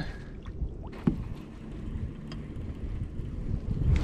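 Low, uneven rumble of wind on the microphone as the kayak sits on open water, with one light knock about a second in.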